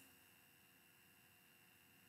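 Near silence: room tone with faint steady tones.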